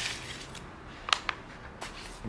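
Foil-wrapped powder packets being handled and lifted out of a plastic bucket: a few short, soft crinkles and taps.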